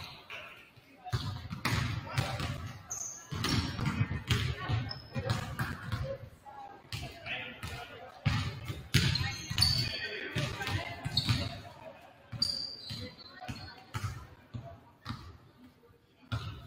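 Basketballs bouncing on a hardwood gym floor: a string of irregular thuds from several balls being dribbled and shot, with voices chatting in the gym.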